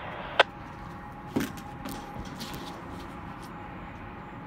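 Loaded oil train's tank cars rolling past at a distance, a steady low rumble with scattered faint ticks and a faint steady tone. A sharp click comes just after the start and another about a second later.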